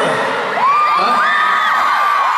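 Large arena crowd screaming and cheering, many high-pitched voices overlapping.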